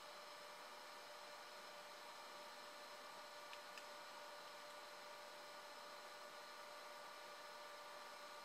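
Near silence: steady room hum and hiss, with two faint clicks a little past the middle.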